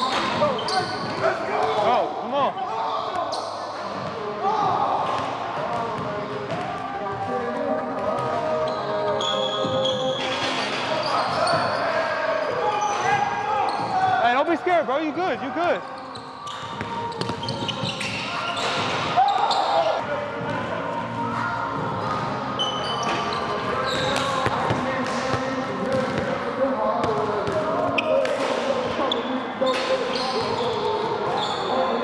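A basketball bouncing on a hardwood gym court during a fast game, with repeated short thuds, and players' voices ringing around a large indoor gym.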